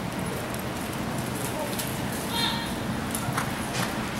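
A horse's hoofbeats as it gallops on soft arena dirt and turns around a barrel in a barrel-racing run.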